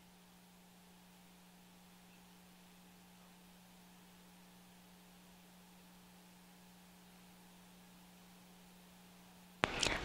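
Near silence: a faint steady hiss with a low steady hum on the broadcast feed. A commentator's voice starts right at the end.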